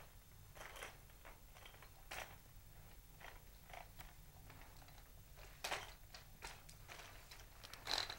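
Faint, irregularly spaced soft knocks and scuffs of an aluminium wheeled walker and bare feet moving over carpet as a patient with an ataxic gait walks. The loudest knock comes just before six seconds in.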